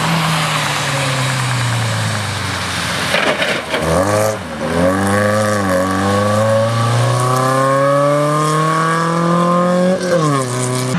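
Fiat 850 Berlina rally car's small rear-mounted four-cylinder engine. The revs fall as it comes off the throttle into a corner, with a burst of rough noise about three seconds in. There are two quick throttle blips through the muddy turn, then one long climbing rev as it accelerates away.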